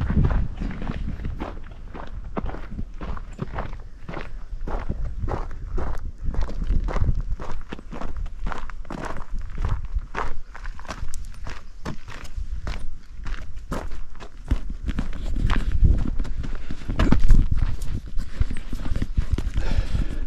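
Footsteps on a dirt path at a steady walking pace, a run of regular short knocks over a low rumble.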